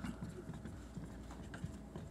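Faint scratches and light taps of markers writing on boards on a desk.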